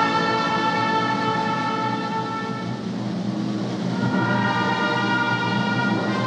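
Instrumental orchestral music with strings, playing slow held chords that change a few seconds in.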